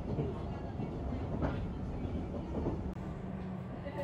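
Steady low rumble of the Kintetsu Blue Symphony electric express train running, heard from inside its carriage.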